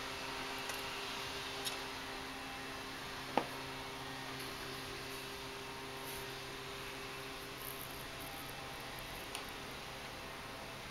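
Quiet room tone with a steady low hum. There are a couple of faint ticks in the first two seconds and one short, sharp sound about three and a half seconds in.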